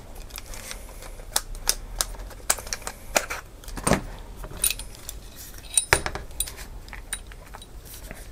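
Scattered clicks and light knocks of hard plastic and metal camera gear being handled: a Zenmuse X5 gimbal camera being unclipped from the DJI Osmo handle and its adapter and set down on a workbench mat. A few louder knocks come about four and six seconds in.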